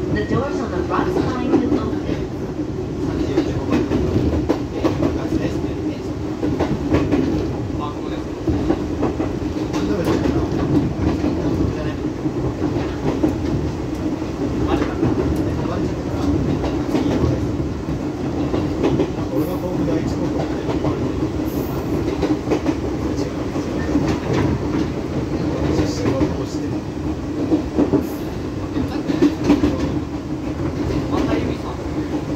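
Running noise inside a Fujikyu Railway electric train car at speed: a steady low rumble of wheels on rail, broken by irregular clicks of the wheels over rail joints.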